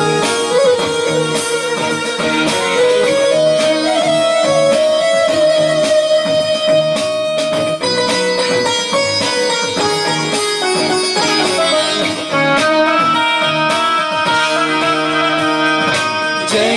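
Instrumental music for a Malayalam Christian song, played on an electronic keyboard: a melody of held notes that steps up and down over a steady accompaniment.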